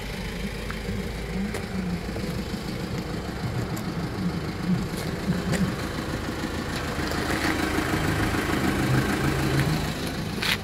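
Kia Bongo III truck engine idling steadily, with a few light clicks, growing a little louder near the end.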